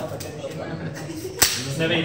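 A single sharp snap of a disposable glove about one and a half seconds in, under faint murmuring voices.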